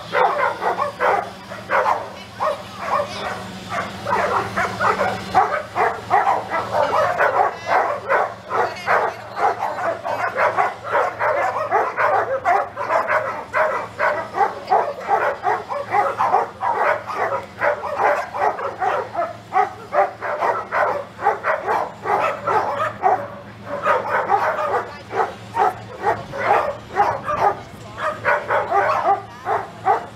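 Dogs barking continuously, many rapid overlapping barks with hardly a pause, over a faint steady low hum.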